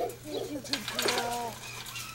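Eight-week-old Airedale Terrier puppies whining: a string of short rising-and-falling cries, one held a little longer about a second in.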